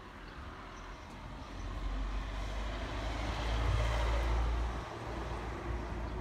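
A vehicle passing on a nearby street: a rumble and tyre hiss that swells to its loudest about four seconds in, then eases slightly.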